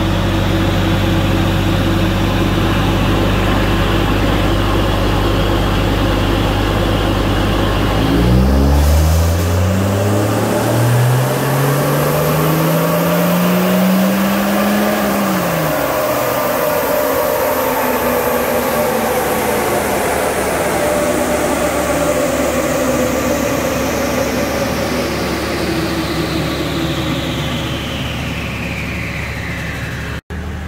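Toyota 1HZ 4.2-litre six-cylinder diesel, turbocharged with a DTS TD05 and its fuel screw turned up a quarter turn, on a chassis dyno power run. It runs steadily for several seconds, then the revs rise for about six seconds before dropping off when the throttle is lifted. A high whine then falls slowly as the drivetrain and rollers coast down.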